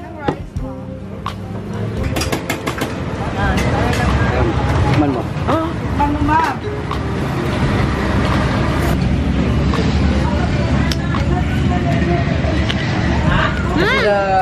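A steady low rumble with voices talking in the background, and a few sharp knocks in the first few seconds.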